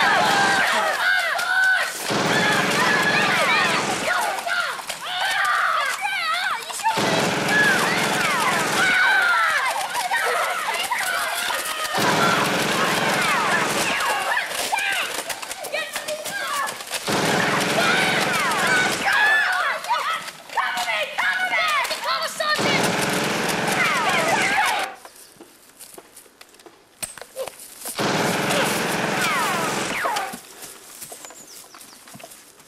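Overlapping shouting voices mixed with rapid gunfire sound effects, coming in sections of a few seconds with abrupt cuts between them. It drops much quieter for about three seconds near the end, then starts again.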